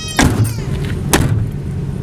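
The rear barn doors of a Nissan NV3500 van being shut one after the other: two thuds about a second apart, the first the louder, over a low steady hum.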